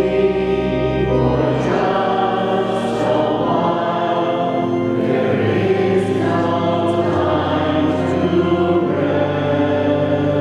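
Congregation singing a hymn with organ accompaniment: sustained chords with a held low bass, the notes changing about once a second.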